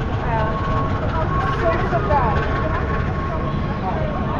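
Busy city-street ambience: passers-by chatting over a steady low rumble of traffic, with a thin steady tone running through it.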